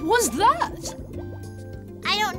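Cartoon background music with a quick run of swooping, warbling sounds in the first second, which the scene and the tags suggest are bubbly underwater sound effects.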